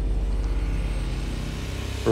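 Suspense music from the show's score: a deep, low rumbling drone left by a bass hit, slowly fading.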